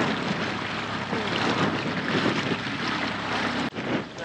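Small outboard motor on a dinghy running steadily under way, mixed with wind noise on the microphone. The sound breaks off briefly near the end.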